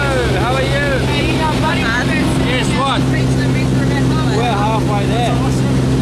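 Steady drone of a light aircraft's piston engine heard from inside the cabin during the climb, with people's voices over it.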